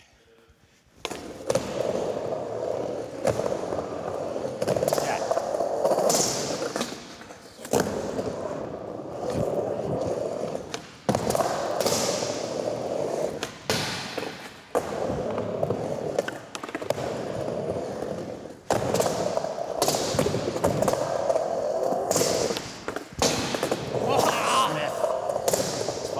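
Skateboard wheels rolling across wooden ramps in one continuous run, broken every few seconds by sharp clacks and thuds of the board popping, hitting coping and landing.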